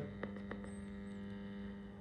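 Steady low electrical mains hum, with two faint clicks within the first half second.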